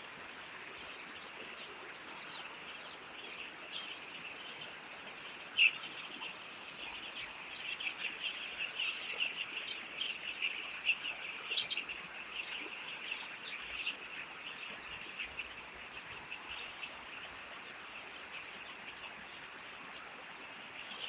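A flock of eight-day-old chicks peeping continuously in many short high chirps, thickest around the middle, over a steady hiss. There is one sharp click about five and a half seconds in.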